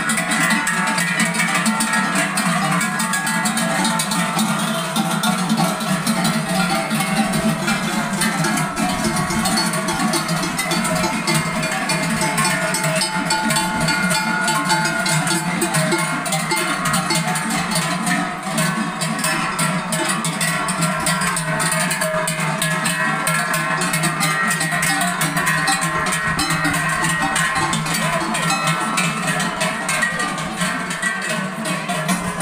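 Many cowbells worn by a passing herd of cattle, clanging continuously and overlapping as the cows walk by.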